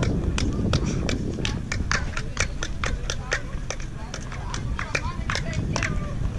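Many sharp hand claps from several people at the foot of El Castillo's stone stairway, at an uneven rate of several a second. Each clap comes back off the steps as a short chirping echo, over the low murmur of a crowd.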